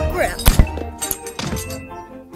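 Animated film soundtrack music with two heavy thuds in quick succession about half a second in, followed by a few lighter knocks.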